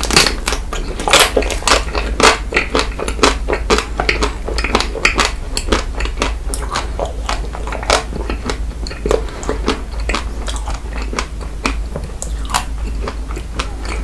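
Close-miked biting and chewing of a chocolate-coated ice cream bar: many sharp crackles as the chocolate shell breaks, dense at first and thinning out toward the end.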